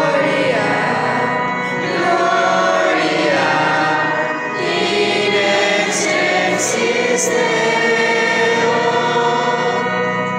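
A choir singing a hymn in long, held notes that move slowly from one pitch to the next.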